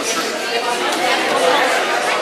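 Many people talking at once in a large hall: steady, overlapping chatter of seated dinner guests, with no single voice standing out.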